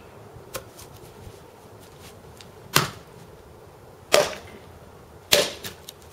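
Three strikes of a Cold Steel Trail Boss axe splitting an upright log round, about a second and a quarter apart, the second and third the loudest. The round is soft from rain, so it splits easily.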